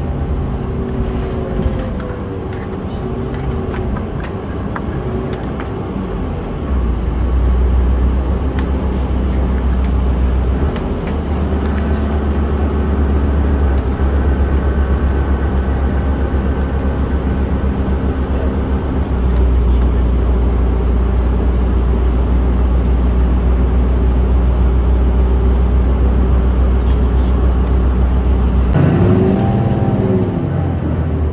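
Inside a moving city transit bus: steady low engine and road rumble with a held engine tone, stepping louder a few times. Near the end the engine tone glides up and down.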